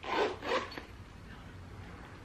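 Handling noise: two short rasping rubs, about half a second apart, as a soldering-iron kit in its carrying case is moved and set aside.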